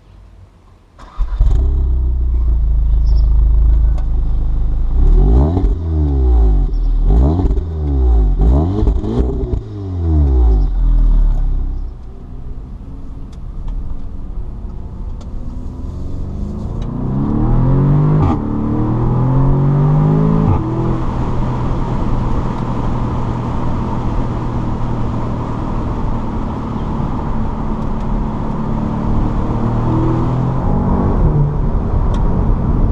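ABT-tuned Audi S3 Sportback's 2.0-litre turbocharged four-cylinder, recorded at its quad-pipe exhaust, starting with a sudden loud burst about a second in and then revved several times, the pitch rising and falling with each blip. Later the engine is heard from inside the cabin, accelerating with rising pitch and then settling into a steady cruise drone with road noise.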